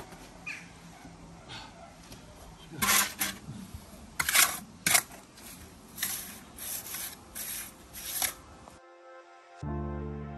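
Steel trowel scraping and smoothing a mortar bed around a recessed manhole tray, in a series of short rasping strokes with a couple of sharper knocks about four to five seconds in. Music comes in just before the end.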